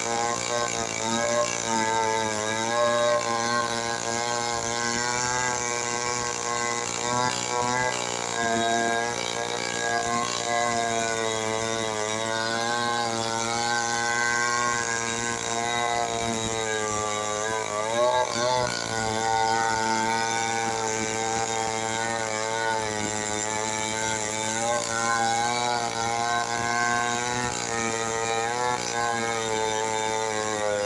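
Stihl 070 two-stroke chainsaw running under load, ripping lengthwise along a waru (sea hibiscus) log. The engine note holds steady with slight wavering as the chain bites, and briefly dips and recovers about eighteen seconds in.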